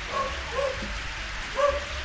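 Three short, high-pitched yelps over a steady hiss.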